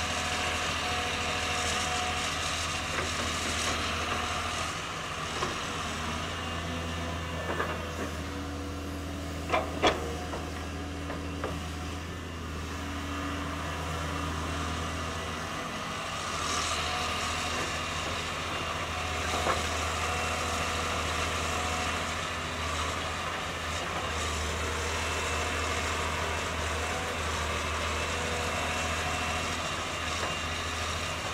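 Caterpillar 320C excavator's six-cylinder diesel engine running steadily while the arm works through brush and trees. There are two sharp cracks close together about ten seconds in.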